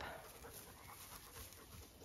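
A dog panting faintly close by.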